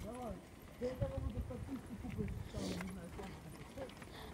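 Faint voices talking in the background, quieter than the nearby speech on either side, over a low rumble of bicycles rolling on pavement.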